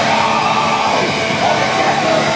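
Old-school heavy metal band playing live at full volume: distorted electric guitars over a drum kit, loud and dense without a break.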